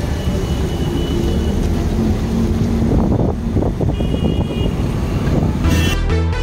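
Auto-rickshaw running through traffic, heard from inside its open cabin: a steady low engine and road rumble with wind buffeting the microphone. Two short high-pitched tones sound over it, about a second in and about four seconds in.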